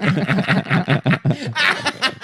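People laughing hard, a rapid run of short laughs about six or seven a second.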